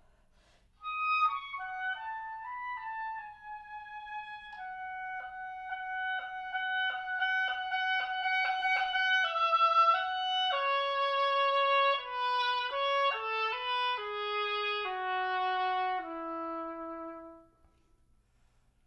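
Solo oboe playing a phrase. It enters about a second in, moves into a run of quickly repeated tongued notes in the middle, then steps down through a series of longer held notes to a low note that stops shortly before the end.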